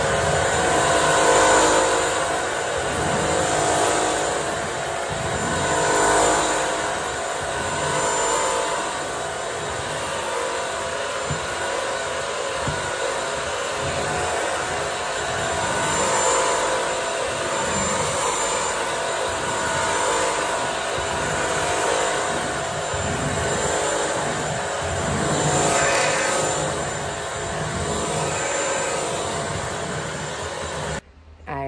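Bissell CrossWave wet-dry floor cleaner running, vacuuming and washing a hard floor at once: a steady motor whine with the brush roll turning, swelling and easing every few seconds as it is pushed back and forth.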